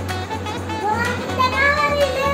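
Background music with a steady bass beat, and a high voice sliding up and down over it.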